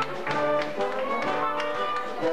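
Instrumental theatre music from a school musical's band, playing held notes that change in pitch, with sharp taps sounding through it several times.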